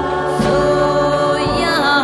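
Music: a 1964 girl-group pop recording, with sustained group vocal harmonies held over a full band. A drum hit lands about half a second in, and a rising vocal slide comes near the end.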